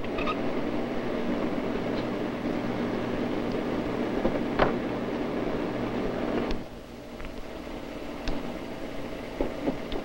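Disk drive and machinery of an IBM 1440 data processing system running with a steady hum while a removable disk pack is swapped, with a sharp click about halfway. About two-thirds of the way through the hum drops to a quieter level.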